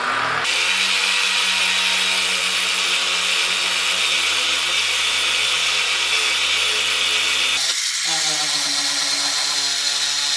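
Electric orbital sander running under load, sanding a 3D-printed PETG Carbon plastic panel flat. It comes up to speed at the very start, runs loud and steady, then its note shifts and wavers near the end.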